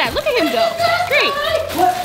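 Children's excited voices, yelling without clear words, over background music.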